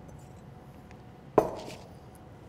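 A glass mixing bowl set down on a wooden butcher-block counter: one sharp knock about a second and a half in, with a short ring after it, over quiet room tone.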